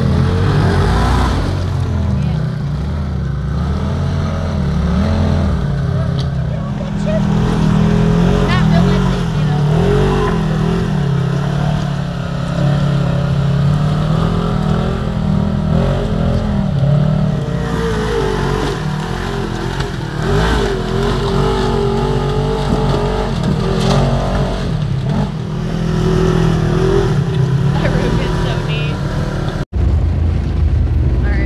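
Polaris RZR side-by-side's engine revving and running under load as it crawls up a rock ledge. The throttle rises and falls unevenly, and there is a brief break near the end.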